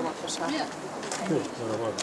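Indistinct voices of people talking at a moderate level, with no clear words.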